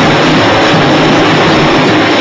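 Samba school bateria playing live in a large hall: a loud, steady, dense wall of drums and percussion with voices mixed in.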